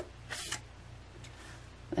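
Tarot cards being handled as one is drawn from the deck: a couple of short card slides or snaps in the first half-second and a fainter one later, over a faint steady low hum.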